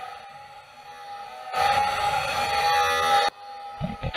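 A steady droning tone with a hiss beneath it, quiet at first, then much louder from about a second and a half in, cutting off suddenly a little over three seconds in.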